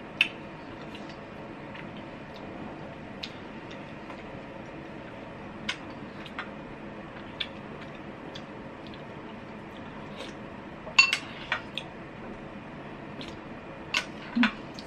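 Ceramic soup spoon clinking against a glass bowl: sparse light clinks, a sharp one right at the start and a quick cluster of three or four a couple of seconds before the end, over a faint steady room hum.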